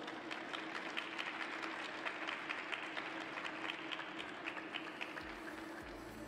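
Sparse applause from a small crowd, individual hand claps heard separately in a large, mostly empty ice arena. Music begins near the end.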